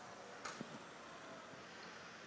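Faint background noise of a busy gymnasium, with one short sharp click about half a second in.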